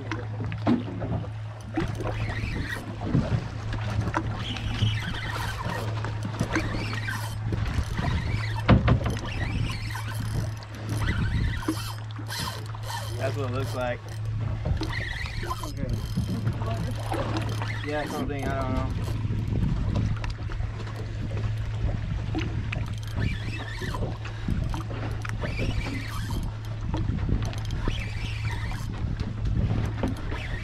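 Fishing boat at sea with a steady low hum running throughout, under a wash of noise and scattered small knocks and bumps.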